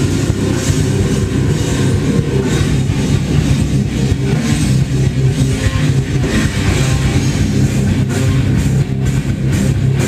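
Heavy metal band playing live and loud: distorted electric guitars, bass guitar and drum kit in full swing.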